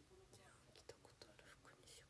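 Near silence, with faint whispering and a few soft clicks.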